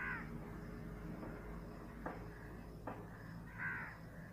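A crow cawing faintly in the background: one short call at the start and another near the end. Two faint clicks in between come from the metal knitting needles.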